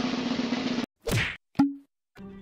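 A drum roll that cuts off suddenly just before a second in, followed by two separate drum hits. The second hit is sharp with a brief low ring.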